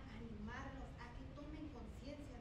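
Speech only: a woman talking into a handheld microphone.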